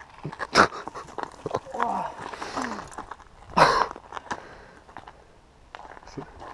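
A man's short 'ah' exclamations, a rider catching his breath just after a mountain-bike crash, the loudest a sharp breathy 'ah' about three and a half seconds in. A single sharp knock comes just under a second in.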